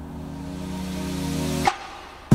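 Background music: a held chord swelling steadily louder, breaking off near the end with a short upward swish.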